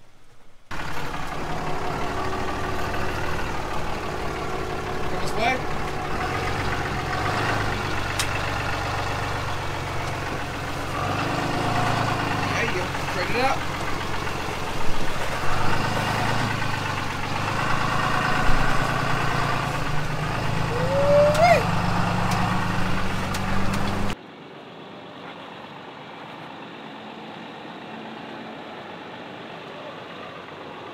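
Off-road vehicle engines running at low speed, with indistinct voices; the engine note changes in steps as throttle varies. A few seconds before the end the sound drops abruptly to a much quieter engine idle.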